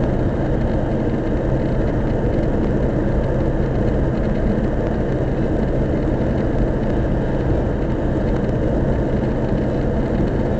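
Car cruising at expressway speed through a road tunnel, heard from inside the cabin: a steady drone of engine and tyre-on-road noise with a constant low hum.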